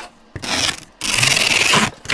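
Packing tape on a cardboard box being slit and torn open: two rough tearing strokes, the second longer and louder, about a second long.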